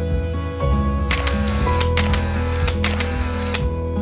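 Gentle background music with a steady bass line. From about a second in until shortly before the end, a camera-shutter sound effect plays over it: a few sharp clicks over a whirring noise.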